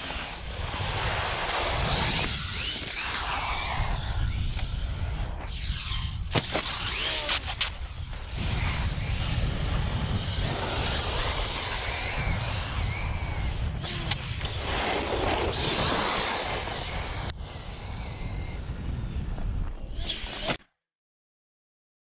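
Arrma Fireteam 1/7-scale electric RC truck making high-speed runs on asphalt: its motor whine and tyre noise swell and fade several times as it speeds past, over heavy wind rumble on the microphone. The sound cuts off suddenly near the end.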